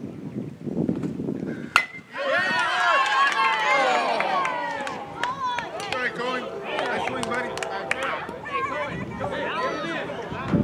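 A single sharp crack of a bat hitting a baseball with a brief ring, followed by many voices, children's among them, shouting and cheering over one another for the rest of the stretch.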